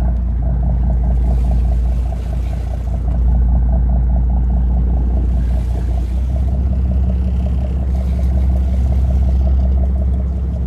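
Boat engine running steadily with a deep, low hum; its tone shifts slightly about six seconds in.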